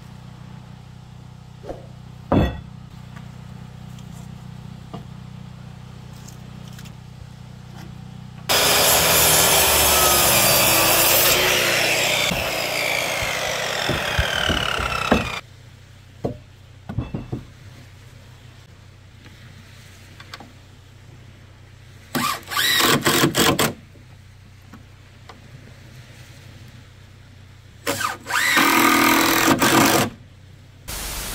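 A circular saw cuts through a wooden post for about seven seconds, its pitch shifting as the blade works through the wood. Later come two short bursts of a cordless drill driving screws into the post, the second near the end.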